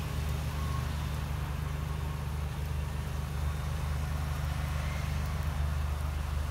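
A 2012 Jeep Liberty's 3.7-litre V6 idling, a low steady hum heard close to the exhaust at the rear of the vehicle.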